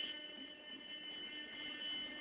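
Faint, steady high-pitched electrical buzz with a low hum beneath it.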